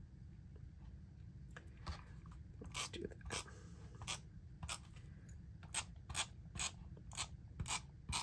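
Repositionable adhesive-dot tape runner drawn along thin paper strips, giving a run of faint, irregular clicks at about two a second from about two seconds in.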